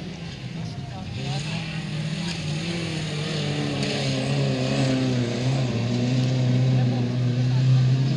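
Autocross race cars' engines running hard on a dirt track, several at once, growing steadily louder as the cars come closer.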